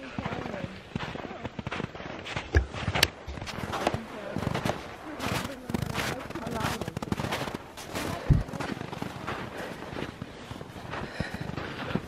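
Footsteps crunching through snow in an uneven run of crackling steps, with a few louder knocks along the way.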